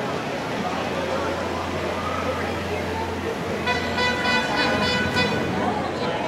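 A vehicle horn honking in a quick run of short beeps for about a second and a half near the end, over a low engine hum and crowd chatter.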